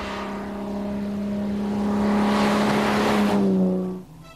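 BMW 328's straight-six engine running steadily as the car comes along the road, growing louder. The engine note drops in pitch near the end, and the sound cuts off abruptly.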